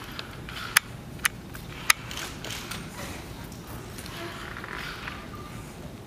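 Berkeley Bionics eLEGS exoskeleton walking a user across a stage, making very little sound: a faint, low mechanical background broken by three sharp clicks in the first two seconds.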